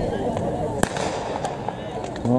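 A starting pistol fires once, a single sharp crack a little under a second in, signalling the start of the 800 m race, over a background of crowd voices.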